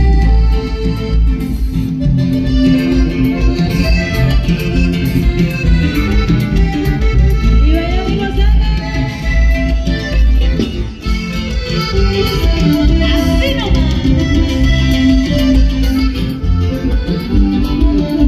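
A live norteño band playing loud through a PA: accordion over guitars, bass and drums, with a steady dance beat.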